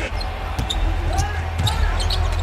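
Basketball being dribbled on a hardwood court, a few separate bounces, with short squeaks of sneakers on the floor.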